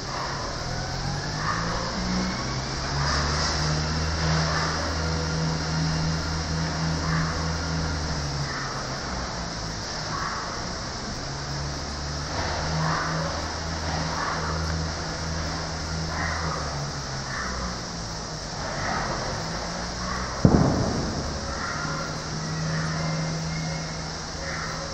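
White-naped mangabey giving short repeated calls every second or two, over a steady low hum. A single sharp knock comes about twenty seconds in.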